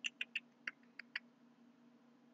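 A quick, uneven run of about six light clicks from a computer's keyboard or mouse, over in the first second and a bit, leaving only a faint steady low hum.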